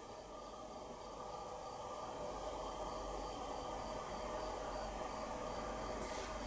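Faint steady room tone: a low hiss with a faint steady hum, no distinct sounds.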